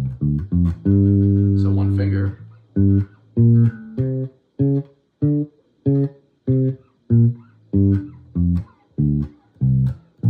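Unaccompanied electric bass guitar playing the G blues scale, note by note, in a higher position: a few quick notes, one long held note, then single plucked notes each cut short, evenly spaced a little over half a second apart.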